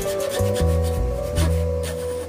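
Hand saw cutting across a wooden board with repeated back-and-forth strokes, heard over background music.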